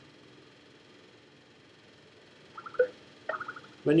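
Faint room tone and microphone hiss during a pause in the narration, then two short vocal sounds from the narrator in the last second and a half before he speaks again.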